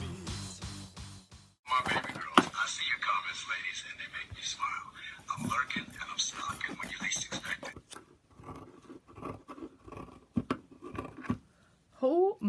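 Music that cuts off about a second and a half in, followed by a voice speaking for several seconds. Near the end come quieter handling sounds with a few soft clicks.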